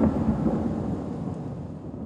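A deep thunder-like boom from a TV title sting, hitting right at the start and rumbling away into a fading tail.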